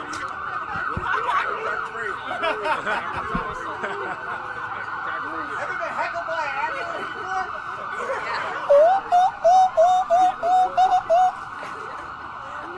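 An emergency vehicle's siren wails as it passes, with a crowd laughing over it. Near the end comes a quick string of about eight short, loud rising notes.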